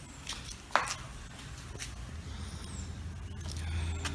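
A single sharp click a little under a second in, then a low steady rumble that grows louder toward the end, with faint high chirps.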